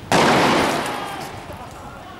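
A single loud bang just after the start, echoing away over about a second.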